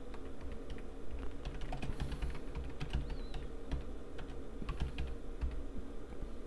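Typing on a computer keyboard: a run of short, irregular key clicks, over a steady low hum.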